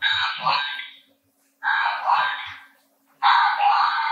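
Aflac duck plush toy's voice box squawking its call three times, each about a second long, through its tiny speaker, set off as the dog squeezes it.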